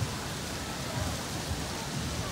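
Steady outdoor background hiss with irregular low rumbles.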